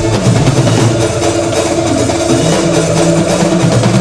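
Drum kit played live over an electronic dance backing track: dense drum and cymbal hits over sustained low synth notes that change pitch step by step.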